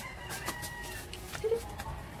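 A chicken calling faintly in the background: one drawn-out call, then a short one about a second and a half in, with a few light clicks between.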